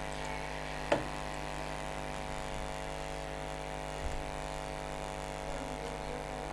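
Steady electrical hum made of many even tones, with one sharp click about a second in and a faint knock about four seconds in.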